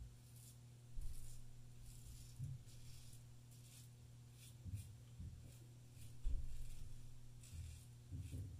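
Double-edge safety razor scraping stubble on the upper lip in short, faint strokes, over a low steady hum.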